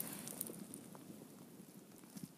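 Faint outdoor background hiss with a few light clicks and ticks.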